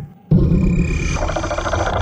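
A loud, distorted electronic buzz, a video-glitch sound effect, cutting in abruptly about a third of a second in and fluttering rapidly.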